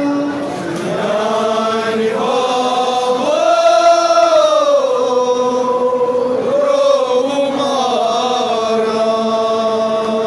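A man chanting a noha, a Shia mourning lament, in long held notes that slide up and down in pitch, amplified through a handheld microphone.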